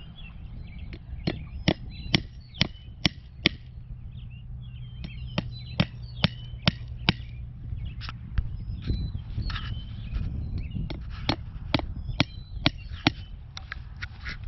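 Hammer driving fence staples into a wooden fence post to fasten v-mesh wire: three runs of sharp strikes, a few a second, with short pauses between runs.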